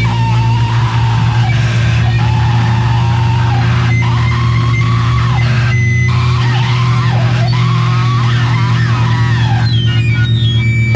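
Industrial metal music: a sustained low drone with a held tone over it and higher wavering tones that glide up and down, noisy and dissonant.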